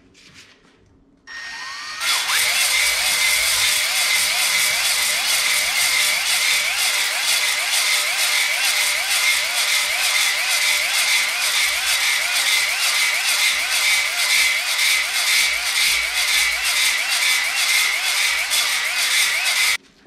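Cordless drill spinning a Flex-Hone ball hone inside an oiled cast-iron cylinder bore, honing out the last of the pitting. It starts about a second in and runs steadily, its pitch wavering up and down a little under twice a second as the hone is stroked in and out, then cuts off just before the end.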